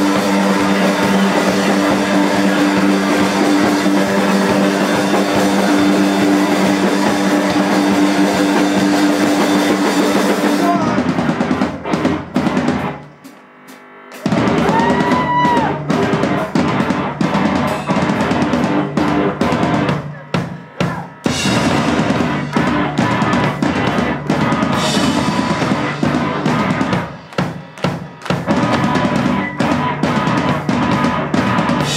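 Live rock band playing loud: distorted electric guitar, bass guitar and drum kit. About eleven seconds in, the dense, sustained wall of sound breaks off and briefly drops away. The band then comes back in a choppier, drum-led passage broken by short, sharp stops.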